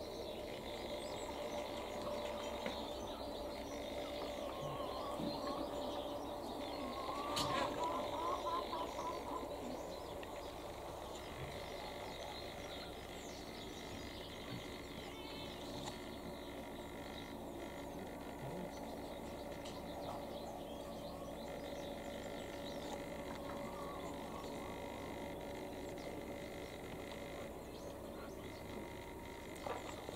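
Outdoor ambience with faint bird chirping over a steady low hum. The chirping is busiest for a couple of seconds about seven seconds in and returns briefly later.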